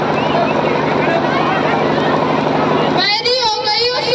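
A girl's voice speaking into a microphone through a loud PA system, over a steady noisy drone; the voice comes through clearer about three seconds in.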